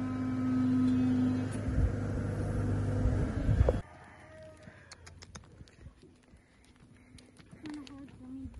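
A steady mechanical drone with a calf bawling once near the start; the drone cuts off suddenly about four seconds in. Then quieter hoof and foot steps crunch on gravel as a heifer is led on a halter.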